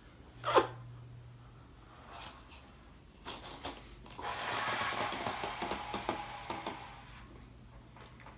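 A person blowing up a rubber balloon: a quick breath about half a second in, then a few seconds of breath blown steadily into the balloon from about four to seven seconds in, with small clicks from the balloon and the cups pressed against it.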